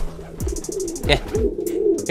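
Domestic pigeons cooing: a low, warbling, repeated courtship coo from a male pigeon courting the hen nearby.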